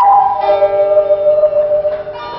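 Live acoustic instrumental music with ringing, bell-like sustained tones, from a plucked string instrument and an instrument whirled overhead. A new note sounds about half a second in and rings on.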